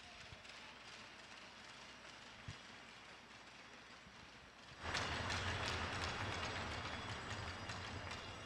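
Crowd applauding in a hockey arena, faint at first and swelling louder about five seconds in.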